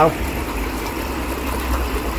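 Steady wash of running pond water with a low rumble underneath.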